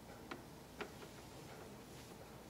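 Hushed room tone with two faint, sharp clicks about half a second apart.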